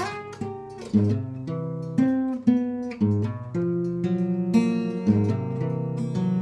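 Acoustic guitar strummed in a steady rhythm, about two chords a second.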